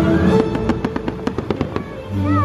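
Crackling firework bursts: a quick run of about a dozen sharp pops starting about half a second in, over the show's music.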